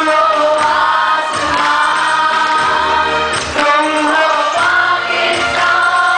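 A large group of voices singing a song together in chorus, with long held notes.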